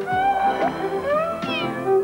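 Light orchestral advert music with strings, over which a cat meows twice, each call rising and then falling in pitch.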